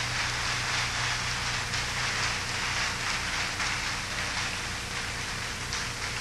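Audience applauding, a dense steady clatter of many hands, over a low electrical hum.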